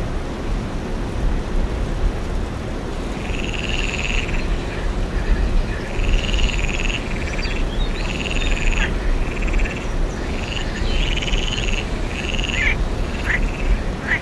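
Tree frog calling: a run of short trilling calls repeated about once a second, starting a few seconds in, over a steady low rumble.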